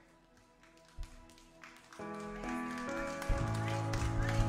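Church worship band music that starts soft, with quiet sustained chords and a single low thump about a second in. About halfway through, the band comes in fuller and louder, and deep bass notes enter shortly after.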